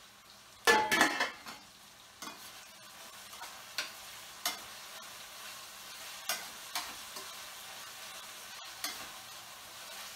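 A stainless steel pot lid clatters down about a second in, the loudest sound, with a brief ring. Then a utensil clicks and scrapes against a stainless steel pan about every second as food is stirred over a steady sizzle of frying.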